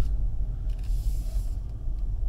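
Steady low rumble of cabin and road noise inside a 2017 Mercedes-Benz E300 driven slowly at parking speed.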